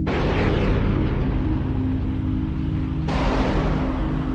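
Two loud rushes of jet-engine noise from film sound design, one at the start and one starting suddenly about three seconds in, each fading off, over a low steady synth drone.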